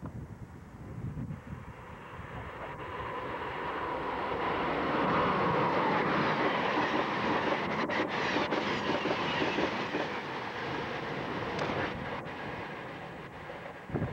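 Amtrak passenger train hauled by an AEM-7 electric locomotive passing close at speed. The rush of wheels on rail builds over the first few seconds and stays loud while the stainless-steel coaches go by, with a few sharp clicks about eight seconds in. It then fades as the train moves away.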